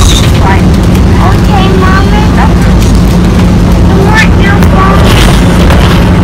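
Loud, steady low rumble of a moving bus's engine and road noise, heard from inside the bus, with muffled voices of other passengers over it.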